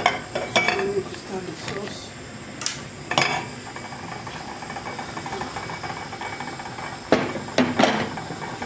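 Metal knocks and clinks of a stainless-steel saucepan and utensils being handled on the cooker: a cluster of sharp strikes in the first few seconds and two more near the end, over a steady low hiss.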